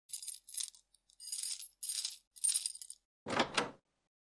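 Metal chains rattling in about five short jingling shakes, then a heavier, fuller clank near the end: a chain sound effect of someone straining against their chains.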